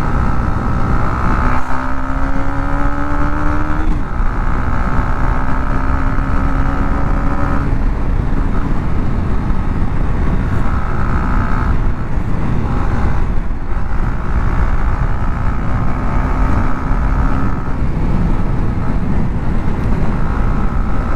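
Motorcycle ridden at road speed, heard from the rider's seat: a dense rush of wind and road noise with the engine note climbing slowly and dropping away several times, about 4, 8, 13 and 18 seconds in.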